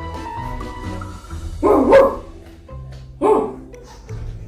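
A woman imitating a dog's bark twice, the first longer and louder, the second short, over background music.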